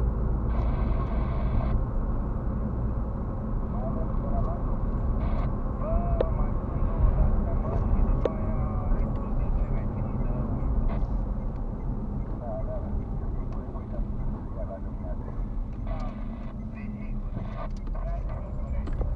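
Car driving along a road, heard from inside the cabin: a steady low rumble of engine and tyres.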